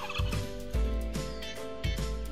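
Turkey gobble sound effect trailing off at the very start, over country-style background music with plucked guitar notes and a steady bass beat.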